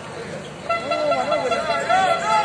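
A horn sounds one long, steady note starting under a second in, over a crowd of voices shouting.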